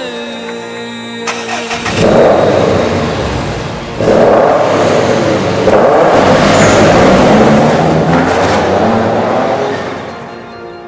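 Subaru Impreza's turbocharged flat-four engine revving loudly, starting about two seconds in, with a second, louder surge about four seconds in.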